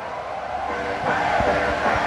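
Faint background chatter of several people over a steady hiss of general noise, with no clear single voice in front.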